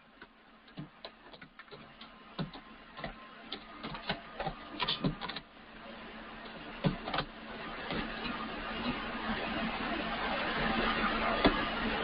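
Computer keyboard keys clicking at an irregular pace as a password is typed. A hiss grows steadily louder through the second half.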